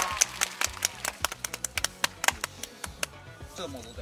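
A small group of people clapping their hands, quick and irregular at first, then thinning out and stopping about three seconds in. Background music plays underneath.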